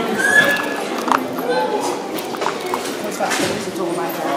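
Footsteps clacking on a hard floor among indistinct voices, with a brief high-pitched squeal near the start.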